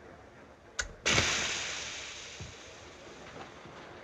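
A panelled wooden door slammed shut: a short click, then a loud bang about a second in that dies away slowly over the next second or so.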